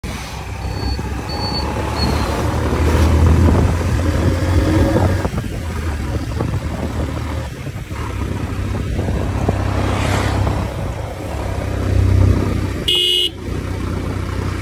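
Road traffic: a steady low vehicle rumble, with a few short high beeps in the first two seconds and a short, high-pitched horn honk about a second before the end.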